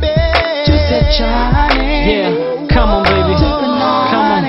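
Bongo Flava R&B song playing: deep bass, a slow beat with a sharp strike about every second and a half, and held, wavering melody notes over it.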